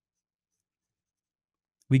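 Dead silence, with no sound at all, until a voice starts speaking right at the end.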